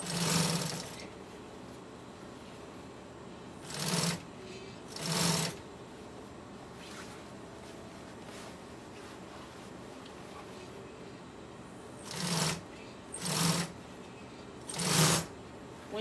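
Industrial sewing machine stitching heavy vinyl in six short runs of about a second each, stopping and starting as the fabric is turned around a curve. A steady low hum fills the gaps between runs.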